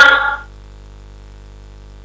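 A man's voice ends a phrase about half a second in, followed by a pause holding only a steady low electrical hum.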